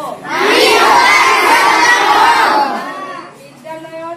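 A large group of schoolchildren shouting together, loud for about two and a half seconds from a moment in, then dropping back to quieter group chanting.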